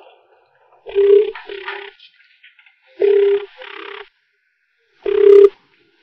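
Telephone ringing tone in a double-ring pattern, sounding three times about two seconds apart, as a call rings out before it is answered.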